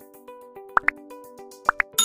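Light background music with evenly paced notes, over two pairs of quick rising pop sound effects about a second apart: the click sounds of an animated like-and-subscribe button.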